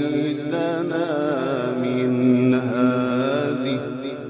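A man reciting the Quran in the melodic tajweed style, one long phrase ornamented with wavering, winding turns of pitch, held through and fading out at the end.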